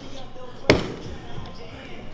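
A single sharp thud about two-thirds of a second in: a body hitting a padded grappling mat during a ground scramble, over background voices.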